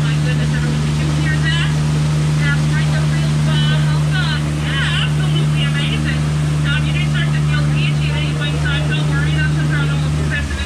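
Ride boat's motor running with a steady low hum as it cruises along a river past a waterfall, with water rushing and short, rapidly repeated bird-like chirps over the top.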